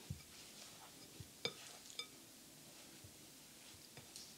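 Faint mixing of mashed potato with a silicone spatula in a glass bowl, with a few taps of the spatula against the glass; the two clearest, about one and a half and two seconds in, ring briefly.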